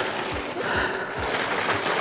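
Plastic bag rustling and crinkling as a bagged model-airplane wing is handled, with a few soft bumps.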